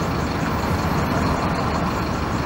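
Steady city street traffic noise dominated by a low engine drone, as of heavy vehicles running nearby.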